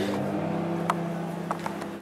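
Microwave oven running with a steady electrical hum while heating a jug of soft-plastic lure mix, with a couple of faint clicks in the middle.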